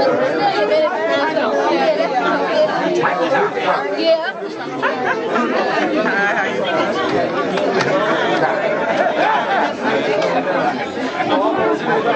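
Several people talking at once in close conversation, with bursts of laughter about four seconds in.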